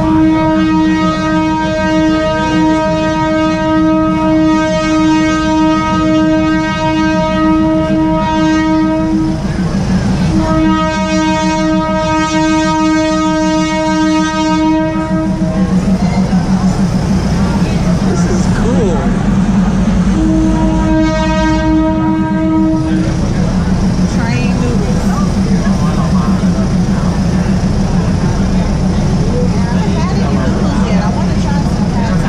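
Train horn sounding three long steady blasts, the first about nine seconds, the second about five and the third about three, with the train's engine droning steadily underneath. The horn warns the vendors and crowd on the track as the train moves through the market.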